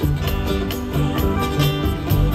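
Live band playing an instrumental groove: a steady drum beat and bass line under guitar and keyboards.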